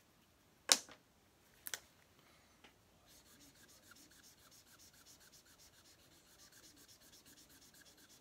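Black marker rubbed quickly back and forth on paper, filling in a solid dark tone. Faint, even scratchy strokes, several a second, start about three seconds in.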